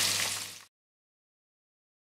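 Boiled eggs frying in hot oil in a pan, sizzling; the sizzle fades out within the first second and cuts to dead silence.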